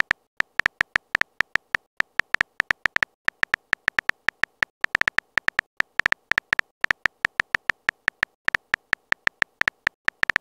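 Simulated phone-keyboard typing clicks, one short tick per letter typed, several a second in a quick, slightly uneven run.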